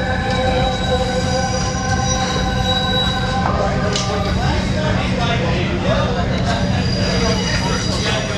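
Freight train wheels squealing on the rails: several steady high-pitched tones over a deep, continuous rumble, the squeal breaking up about three and a half seconds in while people talk.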